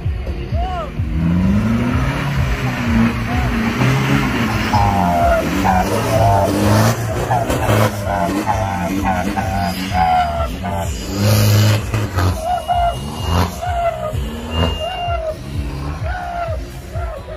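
Engine of a modified off-road 4x4 revving hard under load, rising and falling in pitch, as it climbs a steep dirt mound.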